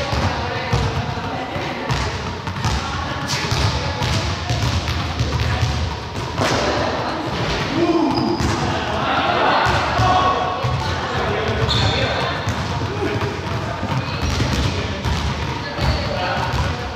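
Balls bouncing again and again on the hard floor of a large sports hall, a run of irregular thuds, with indistinct voices talking in the background.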